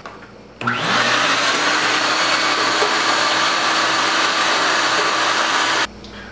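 Wet/dry shop vacuum switched on, its motor whining up to speed and then running steadily with a hose attached; the sound cuts off abruptly near the end.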